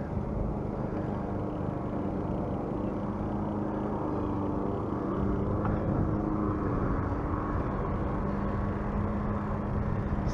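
Bicycle riding on an asphalt road: steady tyre rolling noise and wind on the handlebar camera's microphone, with a steady low hum, a little louder from about halfway through.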